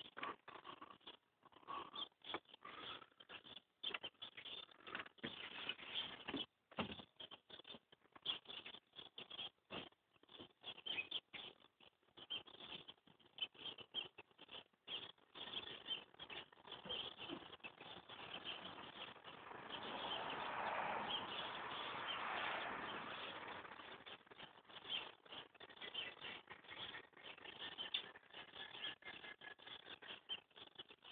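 A small bird giving rapid, high squeaky chirps over and over, with a louder rustling stretch about two-thirds of the way through.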